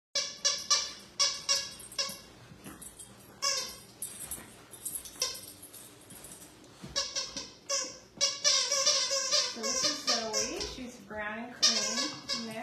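Puppies play-fighting and tugging a toy, giving short high-pitched yips in quick clusters, then a quieter spell, then a longer run of calls that bend up and down in pitch in the second half.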